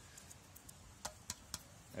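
Quiet background with three faint clicks about a second in, a quarter second apart, and a few fainter ticks.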